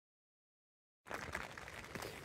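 After about a second of silence, rain patters on a tent's fly sheet, heard from inside the tent.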